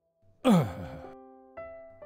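A man's long groaning sigh, falling in pitch, about half a second in, like someone roused from his sickbed. Soft sustained music chords run underneath, with a new chord coming in near the end.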